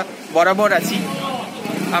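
A man speaking Bengali close to the microphone, with a steady low hum underneath.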